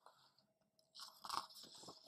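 A page of a picture book being turned: a faint rustle of paper starting about a second in.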